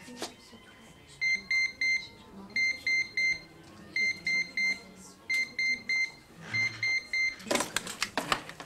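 Electronic desk telephone ringing: five bursts of three quick, high beeps, one burst a little over a second after another, then a short rustle of noise near the end.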